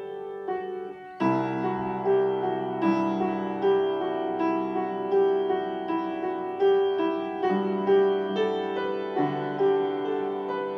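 Upright piano being played: a melody of evenly paced single notes, with a fuller chord and a low bass note coming in about a second in.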